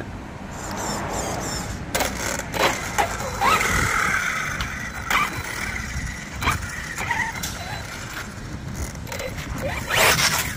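Arrma Typhon TLR Tuned 1/8 RC buggy, its 1650 kV brushless motor on a Max6 160 A system, driving on asphalt. About three and a half seconds in, the motor and drivetrain whine rises in pitch, holds for several seconds, then fades. Sharp clicks and knocks from the buggy's tyres and chassis come through it.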